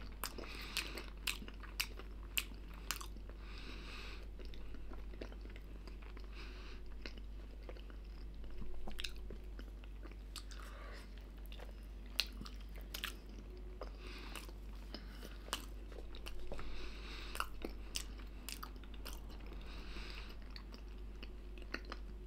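Close-up mouth sounds of a toothless man biting into and gumming a microwaved bread pocket filled with minced meat and barley: repeated wet clicks and smacks, with a few louder spells of chewing.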